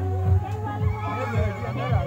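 Group singing of a Nuer gospel song, many voices together over a steady low beat that pulses about twice a second.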